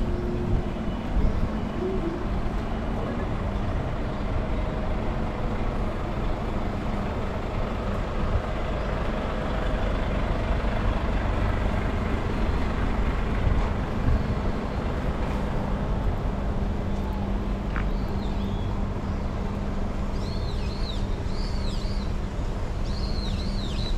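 City road traffic: a steady low rumble of trucks and cars running beside the pavement, with an engine hum that holds one pitch. Birds chirp near the end.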